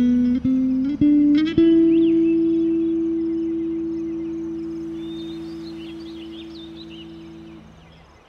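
Bass guitar playing a short rising run of plucked notes, the last one held and left to ring, fading slowly for about six seconds until it dies away near the end.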